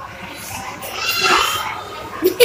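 A small girl's silly, drawn-out vocal noise, high-pitched, starting about a second in and lasting under a second.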